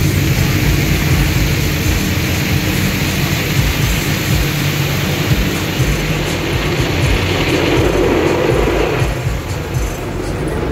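Automatic car wash heard from inside the car: water spray and wash brushes beating steadily on the windshield and body over the rumble of the wash machinery. A deeper swell rises about eight seconds in.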